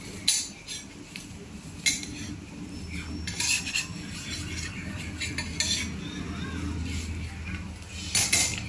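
A flat metal spatula scraping and clinking against a round crepe griddle as a filled jianbing-style crepe is folded and cut, a few sharp strokes standing out, over a steady low hum.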